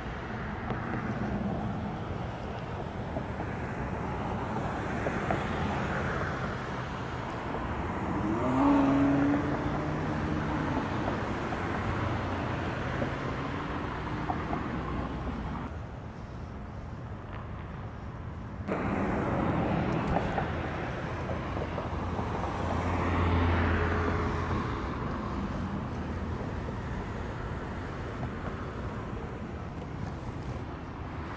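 Street traffic: cars, SUVs and pickup trucks driving slowly past with engines running, a continuous background rumble that drops for a few seconds mid-way and then returns.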